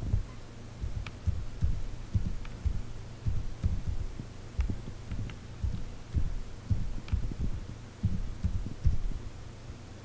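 Typing on a computer keyboard: irregular keystrokes, a few per second, each heard mostly as a dull low thump through the desk, with a few faint clicks, over a steady low hum.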